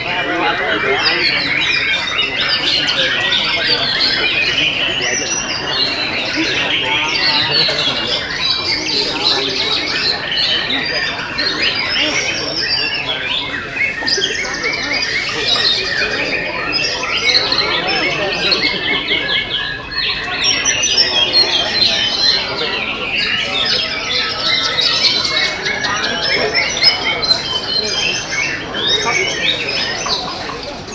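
White-rumped shamas (murai batu) singing in a song contest, several birds at once in a dense, unbroken stream of quick whistles, trills and chatter, with people's voices beneath.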